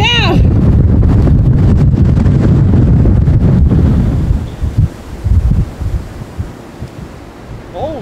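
Strong wind buffeting the camera microphone in a heavy, loud rumble, dropping suddenly about four seconds in to quieter, intermittent gusts.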